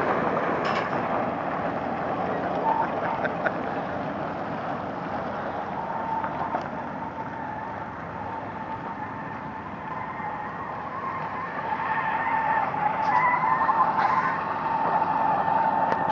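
Semi-truck diesel engines under heavy load while a loaded tractor-trailer is towed by chain across gravel, drive wheels spinning and throwing gravel. A steady noisy engine and tyre sound with a held whine, growing louder over the last few seconds.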